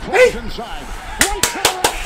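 Four quick, sharp hand claps a little over a second in, over a sports commentator's voice.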